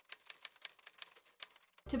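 Typewriter-style key clicks as an added sound effect: a quick, uneven run of about seven or eight sharp clicks a second, stopping just before the end when a woman starts speaking.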